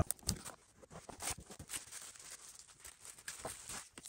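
Faint handling noises: light taps, small clicks and rustling of a cardboard card storage box and plastic-sleeved trading cards being picked up and moved.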